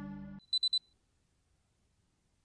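The quiet tail of a held music note cuts off under half a second in, followed by three quick, high-pitched electronic beeps in a row, then silence.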